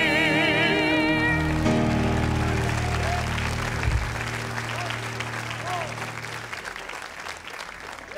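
A small gospel vocal group holds the last note of a song with vibrato; the voices stop about a second and a half in. Audience applause follows at once and slowly fades, while the backing music holds a chord until about six and a half seconds in.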